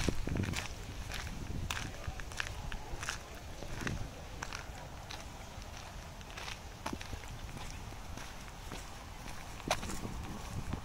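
Footsteps of a person walking on a dirt footpath, each step a short scuff at a walking pace, over a low steady rumble.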